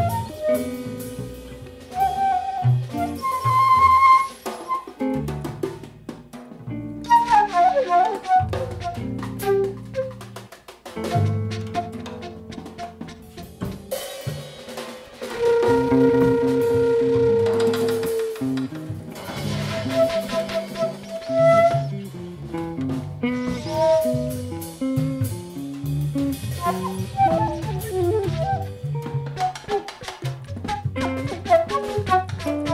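Instrumental trio music: a flute playing held and running melodic lines over busy drum-kit playing with snare and rim hits, and a bass moving in stepped low notes beneath.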